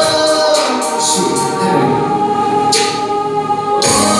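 A male and a female voice singing a pop duet over a backing track with a drum beat, holding long notes.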